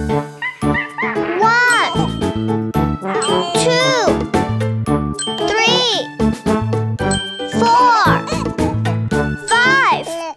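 Children's song music with jingling bells, and a cartoon child's voice counting up to five in sing-song swoops about every two seconds.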